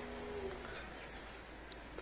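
Faint outdoor ambience with birds calling softly. A steady low hum fades out about half a second in.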